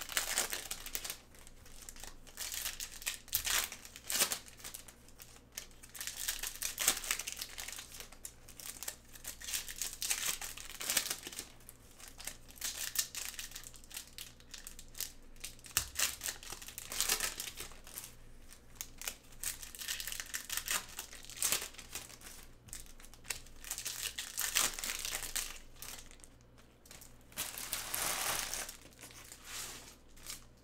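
Foil trading-card pack wrappers being torn open and crinkled by hands in nitrile gloves, in irregular crackling bursts.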